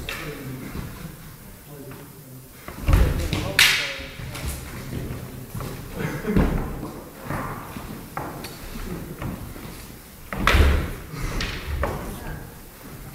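Backsword fencing bout in a large hall: feet thudding and stamping on the floor three times, about three, six and ten and a half seconds in, with a sharp crack of a blade strike just after the first thud. Voices murmur in the background.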